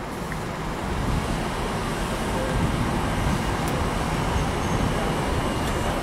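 Steady outdoor background noise: a low haze of distant road traffic with wind on the microphone, rising slightly about a second in.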